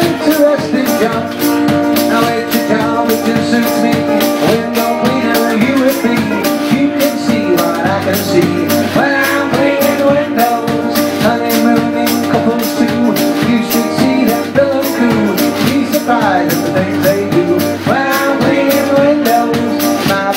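Acoustic guitar and washboard playing live together in an instrumental break between verses. The washboard is scraped in a steady, even rhythm under the guitar chords.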